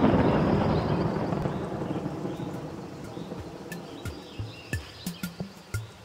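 Intro music for an animated logo: a loud noisy swell fades away over the first few seconds. From about halfway, short percussive hits follow, low thuds that drop in pitch and sharp high ticks, leading into the music.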